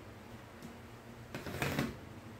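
Rotary cutter drawn along an acrylic ruler, slicing a strip of fabric against a cutting mat: one short scraping cut of about half a second, starting about a second and a half in.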